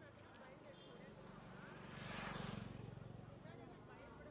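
A motor vehicle passes by on the street, rising to its loudest a little past the middle and fading away, over a faint murmur of people talking.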